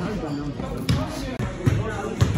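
Voices talking, with two sharp thuds, one about a second in and one near the end.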